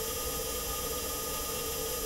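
Perseverance Mars rover's heat rejection fluid pump, part of its thermal system, picked up in the vacuum of space through mechanical vibration by the rover's entry, descent and landing microphone: a steady, subdued whirring with two steady tones over a hiss.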